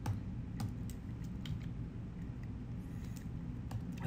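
A few scattered, irregular clicks from a computer keyboard over a low steady hum, as the next lecture slide is brought up.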